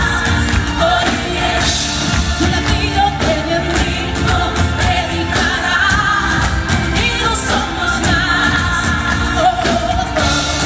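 Live pop band performance: a woman singing lead in Spanish over electric guitar, bass, drums and keyboards, heard from the audience.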